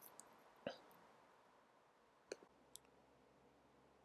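Near silence with a few faint clicks: a cup being handled on a laboratory balance, once about a second in and twice more just past the middle.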